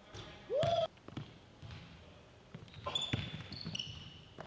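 Basketball bouncing on an indoor gym court, with sharp knocks through the stretch. A short loud rising squeal comes about half a second in, and there are short high squeaks near the end.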